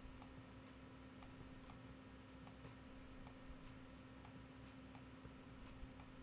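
Faint computer mouse clicks, about eight at irregular intervals, placing the points of a mask outline one by one, over a low steady hum.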